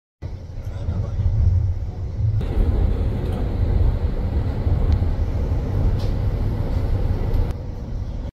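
Metro train running, a steady low rumble heard from inside the carriage.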